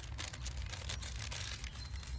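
Faint crinkling and rustling of a plastic zipper bag being gathered and pinched together by hand, over a low steady rumble.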